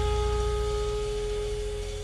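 Jazz quartet's final chord ringing out after it was struck: a held pitched note with its overtones over a deep bass note, both slowly fading, with the higher part dropping out about one and a half seconds in.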